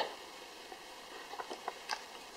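Faint handling of a cardboard CD case as it is turned over in the hands: a few small soft ticks and taps over a low hiss, mostly in the second half.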